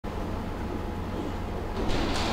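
Steady low hum with faint room noise in a hall, growing a little louder near the end.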